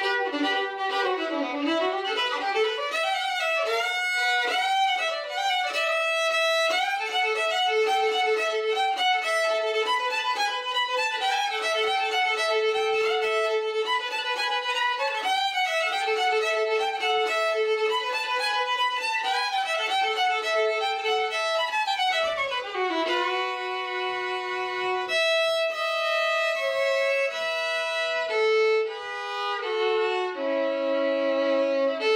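Solo violin, bowed, playing a quick-moving melody, often sounding two strings at once. About 22 seconds in it slides down in pitch into lower held notes.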